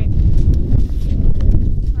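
Wind buffeting the microphone, a steady low rumble, with a few short knocks.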